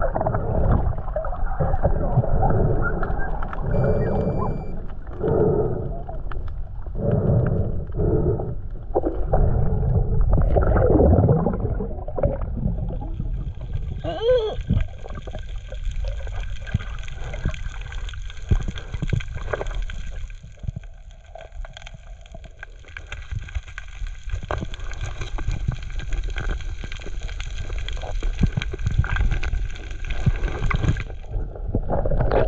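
Muffled underwater sound of a diver swimming: water rushing and bubbling in uneven surges against the camera housing. About halfway through it thins into a steadier, finely crackling hiss.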